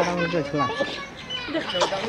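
Several voices talking over one another, children among them, calling out excitedly.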